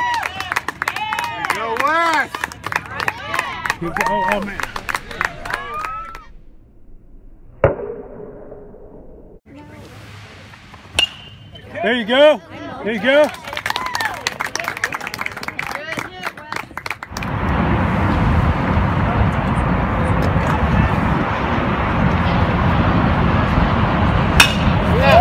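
Spectators' voices calling out, then, about a third of the way in and after a lull, a single sharp crack typical of a metal bat hitting a pitched baseball, followed by more calls of encouragement. In the last third a steady loud rush of noise takes over.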